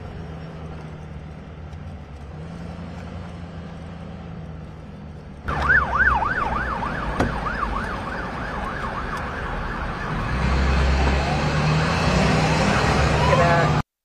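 A vehicle's engine and road noise hum low, then about five and a half seconds in an emergency vehicle siren comes in suddenly, wailing in a fast yelp that rises and falls about three times a second. A heavier engine rumble joins it about ten seconds in, and everything cuts off suddenly just before the end.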